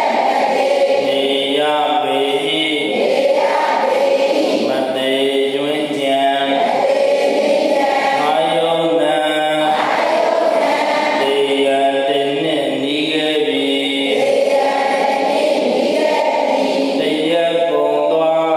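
A group of voices chanting together in unison, a continuous Buddhist recitation in a slow, repeating melodic pattern.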